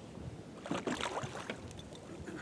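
Shallow water splashing and sloshing around a person wading, in an irregular burst of about a second in the middle, with a few light knocks mixed in.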